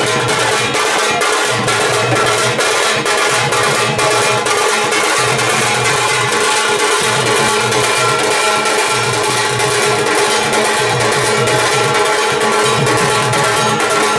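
Dhak, the large barrel drums of Bengali puja, beaten with sticks in a dense, continuous rhythm, together with a smaller stick-beaten drum and a steady metallic ringing over the drumming.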